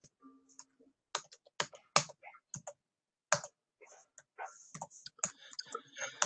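Computer keyboard typing, heard as irregular clicks through a video-call microphone and coming faster in the second half. A brief low hum sounds about half a second in.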